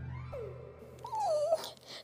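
A young woman's high, wavering whine, a cutesy "kkiiiing" acting out a penguin shivering with cold. A short falling whine comes first, then a louder, longer wobbling one about a second in.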